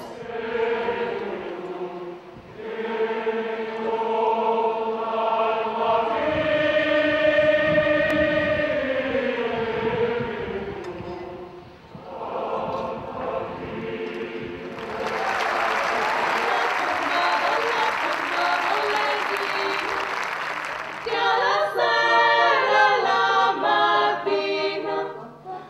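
Large choir singing long held chords, then applause for about six seconds, then a small group of women's voices singing near the end.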